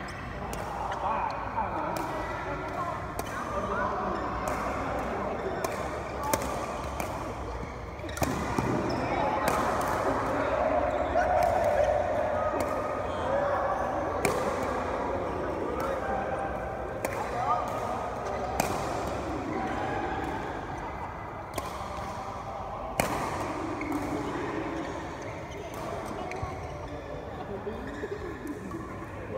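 Sharp racket strikes on a badminton shuttlecock, coming every second or so during rallies, with men's voices talking over them.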